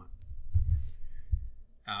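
A pause in a man's narration at the microphone: a soft breath and a few dull low thumps, then a short 'uh' at the very end.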